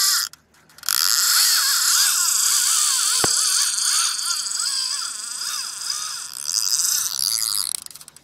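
Shimano Tiagra 130 lever-drag reel's clicker ratchet buzzing as line runs off the spool, wavering in pitch, with a short break about half a second in and a single sharp click a little past three seconds.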